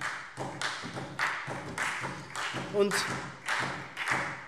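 Brief applause from a small group in a large, echoing chamber: even, sharp beats about three a second that carry on under the speaker's next word.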